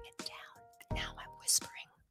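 Soft background music with steady held tones, fading down and stopping shortly before the end, under a woman's quiet, whispery speech.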